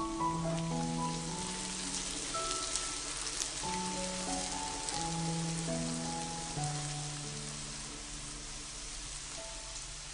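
Shredded-radish pancakes sizzling in hot oil in a nonstick frying pan, a steady hiss with small crackles, over background music of slow held notes.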